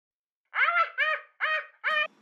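A high-pitched voice sounds four short syllables about half a second apart, each rising and then falling in pitch.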